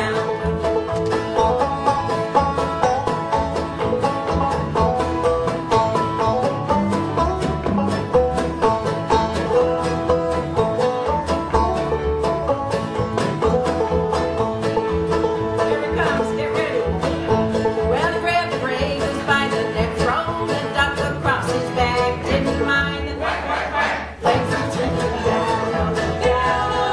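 Live acoustic bluegrass band playing an instrumental break, with banjo picking over acoustic guitar and upright bass. The music dips briefly near the end, then carries on.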